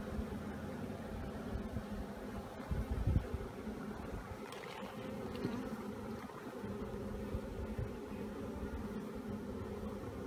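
Many honeybees buzzing around an open hive and a frame crowded with bees, a steady hum of one pitch with overtones. A brief low rumble about three seconds in.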